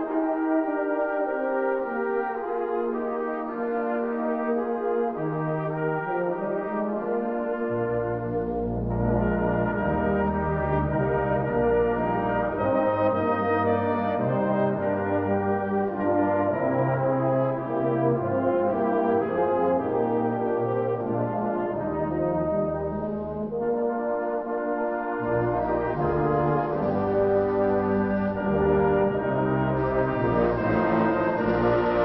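Salvation Army brass band playing sustained, held chords; the low bass instruments join about eight seconds in.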